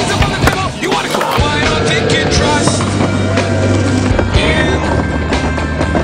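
Skateboard on concrete: sharp clacks and knocks of the board in the first second or so, then wheels rolling, under a heavy rock song.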